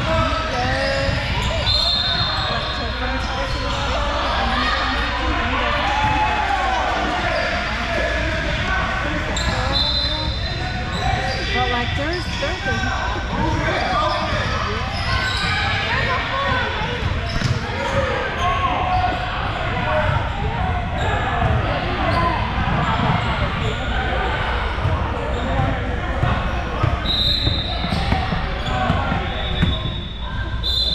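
A basketball bouncing on a hardwood gym floor during play, under a continuous hubbub of indistinct voices in a large, echoing gym. A few short high-pitched tones cut through about two seconds in, around ten seconds in, and near the end.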